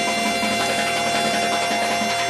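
A band holding one long, steady chord with many instruments sounding together, the sustained chord that follows a drum roll and crash.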